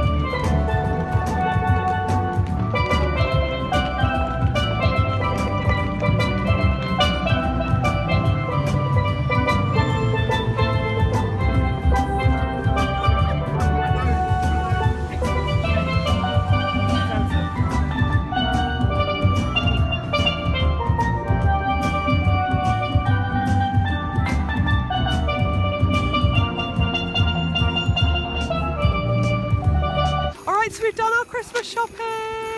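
Steelpan played live by a street busker: quick runs of short ringing melodic notes over a steady bass and drum backing track from PA speakers.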